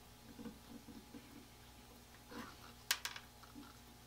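Faint scraping and light clicks of a pointed tool working the masking pins out of the holes of a freshly painted Stanley No. 80 cabinet scraper body, with one sharp click about three seconds in.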